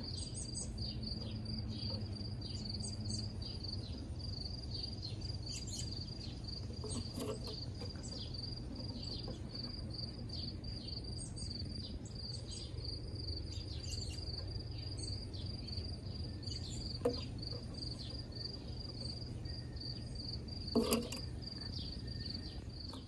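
Insects chirping in a steady, high, evenly pulsing chorus over a low background rumble, with a few faint clicks.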